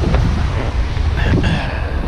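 Wind buffeting the microphone in a heavy, uneven low rumble.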